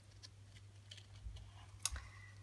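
Quiet handling of paper, giving a few faint ticks and one sharper click near the end, over a steady low electrical hum.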